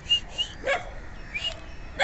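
A stray dog barking: a short bark about a third of the way in, with brief high yips before it.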